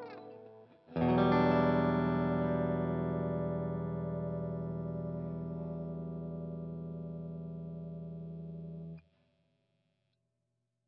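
PRS Paul's Guitar electric guitar: the last held note of a lead line dies away, then a chord is struck once about a second in. It rings and slowly fades for about eight seconds, then is cut off suddenly.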